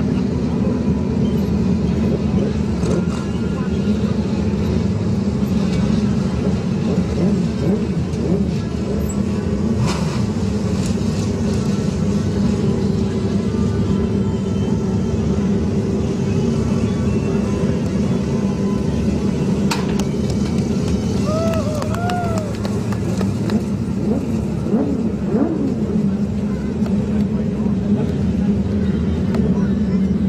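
Wingless sprint car engine running at low, steady revs, a deep even note held throughout, as the car cruises slowly round the dirt track.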